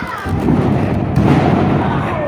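A wrestler slammed onto the wrestling ring's canvas: booming thuds of the ring floor, the loudest about a second in, followed by a low rumble.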